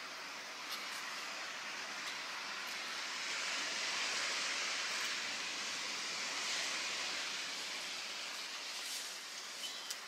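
A steady outdoor rush of noise that swells for a few seconds in the middle as a nylon puffer jacket rustles while being pulled on. A few faint clicks come near the end.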